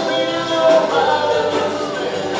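Live band playing a song, with sung vocals over guitars, heard through the hall's PA.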